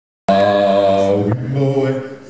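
All-male a cappella group singing sustained chords in close harmony, with no instruments. The sound cuts in about a quarter second in, and just over a second in the chord shifts to new held notes.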